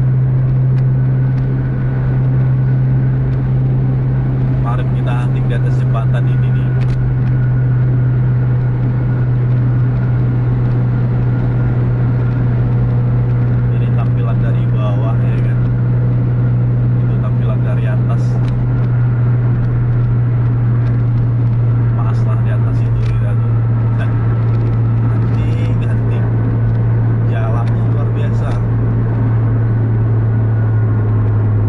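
Steady low drone of engine and road noise heard inside a vehicle cruising at highway speed, about 110–120 km/h; the drone sinks slightly in pitch near the end. Low voices talk on and off over it.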